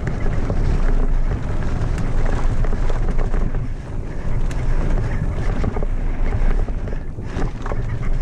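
Mountain bike descending a rocky dirt trail at speed: loud wind rush on the microphone with tyre noise on dirt and scattered clicks and rattles from the bike over rough ground.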